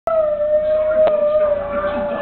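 Howling in chorus with cartoon dogs on the television: a young boy's long howl, held on one pitch that sinks slowly. There is a short click about a second in.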